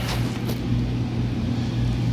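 Ventilation fan blowing air into a crawl-space tunnel: a steady low hum with an even rush of air.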